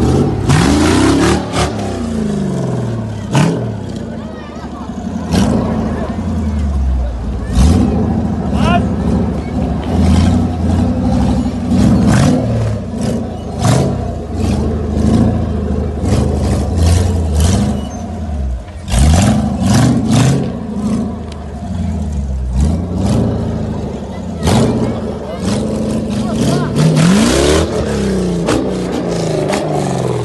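Caged Jeep Wrangler YJ off-road rig's engine revving hard again and again, pitch rising and falling, as it claws up a steep dirt slope, with sharp knocks throughout. Spectators' voices run under it.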